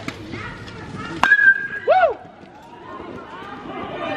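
Youth baseball bat hitting a pitched ball: a sharp crack about a second in, followed by a short ringing ping. A brief rising-and-falling call follows right after it.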